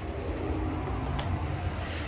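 A low, steady rumble with a faint click about a second in.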